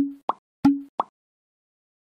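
Four short pop sound effects in quick succession within the first second, each marking a graphic popping onto an animated slide.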